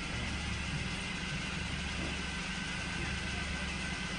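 A small car's engine idling steadily, an even low hum.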